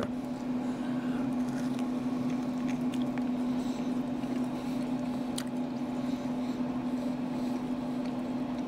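A person biting into and chewing a smoked pork rib: soft, wet mouth sounds with a few small clicks. A steady low hum runs underneath throughout.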